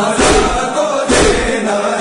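Male voices chanting a noha, an Urdu Shia lament recited in unison, with a low beat keeping time underneath.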